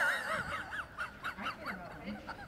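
A person laughing: a high-pitched, squeaky run of short rising-and-falling notes that starts abruptly and tails off near the end.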